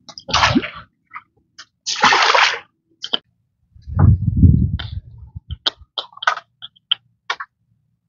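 Water splashing in a shallow ditch in a few separate bursts, one of them lower and heavier, followed by a run of short sharp ticks.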